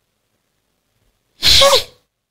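A person sneezing once, a short sharp burst about one and a half seconds in.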